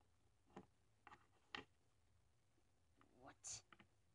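Near quiet with a few faint, short clicks and taps in the first half, typical of small plastic toy figures being handled and set down on a table. A single spoken word follows near the end.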